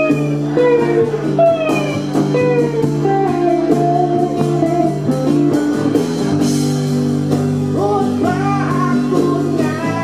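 Live band music in a small room: guitar and bass over hand drums, with sustained and bending melodic notes over a steady low bass line.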